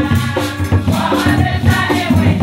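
A women's choir singing an upbeat song together, over a steady beat of hand percussion.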